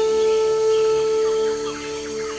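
Outro music: a flute holds one long note that eases off about one and a half seconds in, with birds chirping over it.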